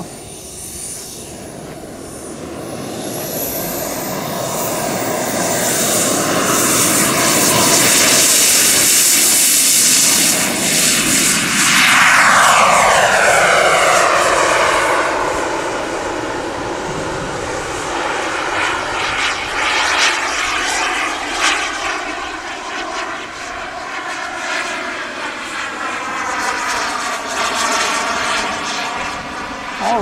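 Kerosene-burning model jet turbine in an RC T-45 Goshawk at takeoff power: a hissing whine builds over the first several seconds as the jet rolls and lifts off. Its pitch sweeps down about 12 seconds in, then it settles to a steadier, quieter whine as the jet climbs away.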